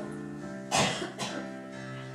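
Soft background music with held notes, interrupted about three-quarters of a second in by a short, loud cough, with a smaller one just after.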